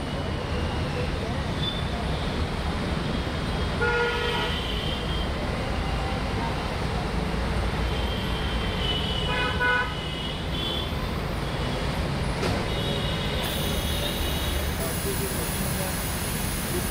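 Steady low rumble of road traffic, with short car-horn toots about four seconds in and again near ten seconds, and fainter horn tones later.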